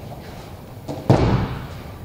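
A heavy training dummy thudding down once, about a second in, followed by a brief ring-out.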